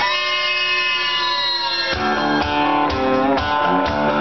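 Karaoke backing track starting: a sustained chord rings for about two seconds, then the instrumental intro comes in with a steady beat of low drum or bass hits and moving notes. No voice is singing yet.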